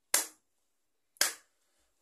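Two sharp hand claps about a second apart, keeping a steady beat.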